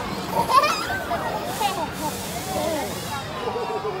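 Children's voices, high-pitched calls and chatter rising and falling in pitch, without clear words, with a brief hiss a little past the middle.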